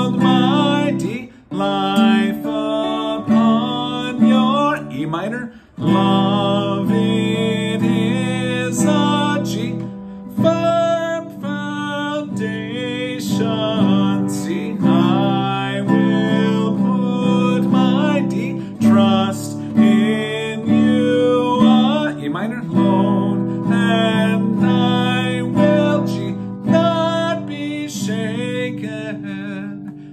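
Nylon-string classical guitar strummed in chords in the key of G, with a man singing along in a fairly high register. Two short breaks in the playing come in the first six seconds.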